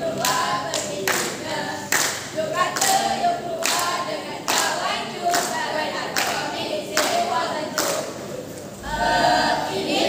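A group of young voices singing or chanting together without instruments, with sharp claps or stamps keeping a steady beat of about one a second.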